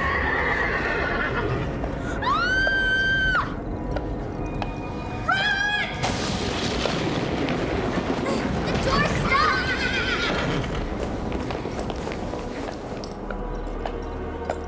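A horse whinnying several times, with long high-pitched cries, over a dramatic film score.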